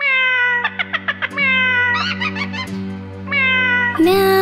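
A domestic cat meowing repeatedly over sustained background music: one long meow falling in pitch at the start, a quick run of short meows, then a few more calls.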